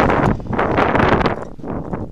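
Wind buffeting an outdoor camera microphone, a loud rushing roar that swells and dips in gusts.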